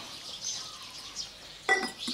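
A ceramic slow-cooker lid set down with a single sharp, ringing clink near the end, over birds chirping in the background.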